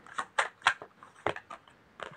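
Tarot cards being handled while one is drawn from the deck: a string of about five short, sharp snaps and clicks.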